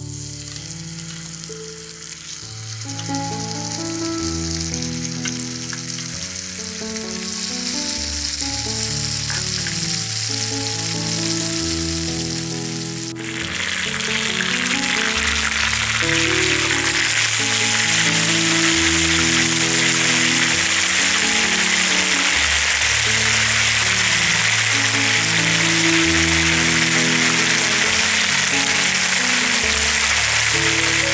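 Marinated chicken drumsticks sizzling in hot fat in a pan, under background music. The sizzling is quieter at first and becomes much louder and steady about thirteen seconds in.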